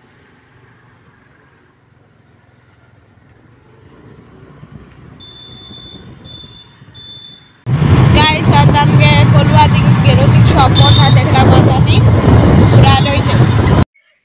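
Outdoor road ambience with a faint low rumble that grows louder, and three short high beeps. Then a boy speaks close to the phone's microphone while wind buffets it with a heavy low rumble, and this is the loudest part.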